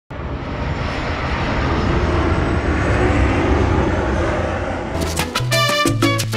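Jet aircraft noise, a dense rumble and rush that swells and then eases slightly, cut off about five seconds in by Latin music with brassy chords and a salsa beat.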